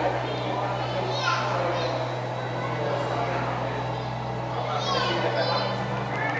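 Background chatter of several voices talking at once, with a few high-pitched calls or exclamations, over a steady low hum.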